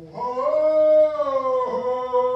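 A man's voice chanting long held, howl-like notes: it slides up in pitch, holds, and falls back to a steady lower tone with a brief catch near the end.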